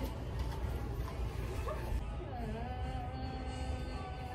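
People talking with faint background music.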